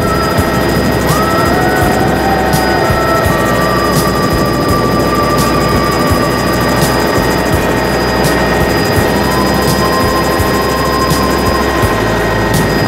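Helicopter cabin noise in flight: the steady drone of the rotor and turbine engine heard from inside the cabin.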